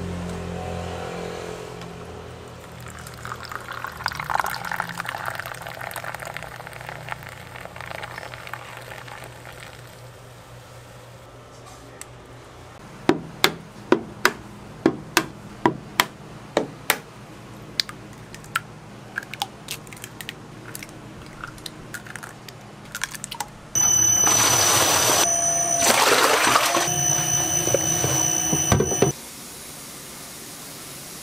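A drink poured from a just-opened can, fizzing, followed a few seconds later by a quick series of sharp taps as eggs are cracked against the rim of a plastic container. Near the end, a loud, steady machine noise with a high whine runs for about five seconds and cuts off suddenly.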